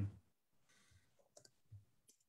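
Near silence with a few faint, short clicks about one and a half seconds in.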